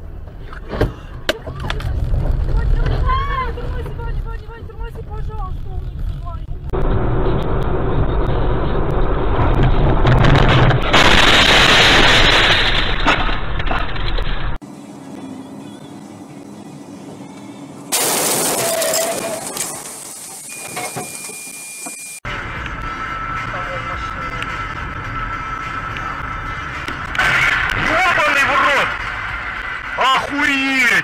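Audio from several dashcam clips cut together: road and engine noise inside moving cars, with voices. A loud rushing noise fills the middle stretch, and a steady beeping tone sounds near the end.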